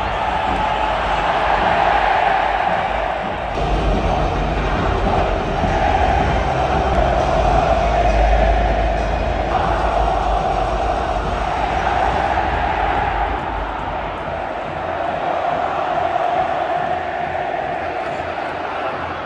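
Huge stadium crowd roaring and cheering without a break, with music from the stadium's PA system underneath. A deep rumble swells from about four seconds in and fades again near the ten-second mark.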